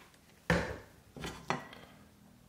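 Cookware clattering on a glass-top electric stove: a sharp knock about half a second in, then two more quick knocks around a second later, each dying away fast.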